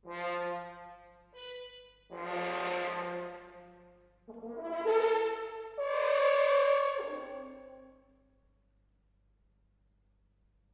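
Solo French horn playing a phrase of separate loud notes that jump between low and high pitches, each ringing on in the hall's reverberation. The last note dies away about eight seconds in.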